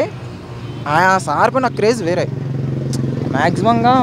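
A man speaking, with a steady engine hum from a motor vehicle running underneath, clearest in a short pause about two seconds in.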